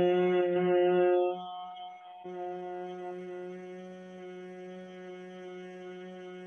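A woman humming a long, steady 'mmm' on one low pitch through closed lips: the exhalation of Bhramari pranayama, the humming-bee breath. It is loud at first, dips for a moment about two seconds in, then carries on more softly on the same note.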